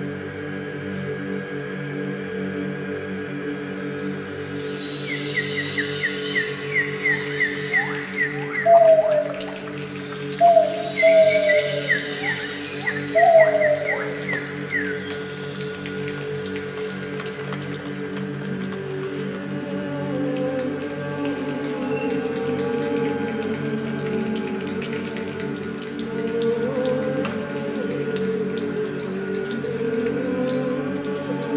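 Mixed a cappella chorus holding a soft sustained chord. From about 5 to 15 seconds in, quick high bird-like chirps and a few louder swooping calls sound over it. Later a moving melody line enters over the held chord.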